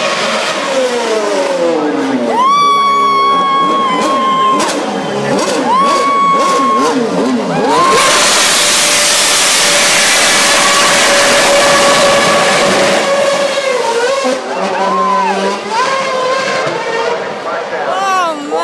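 McLaren MP4-27 Formula One car's Mercedes 2.4-litre V8 revving very high in several held bursts, with falling and rising pitch between them. About eight seconds in it gives way to a loud rushing noise lasting about five seconds as the car passes close, then the engine revs up and down again.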